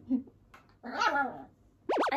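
The tail of a wavering, laugh-like vocal sound stops right at the start, then one short vocal call with falling pitch about a second in. A quick rising swoosh effect comes just before the end.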